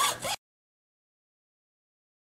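Dead digital silence: after the last fraction of a second of speech, the sound track cuts out completely.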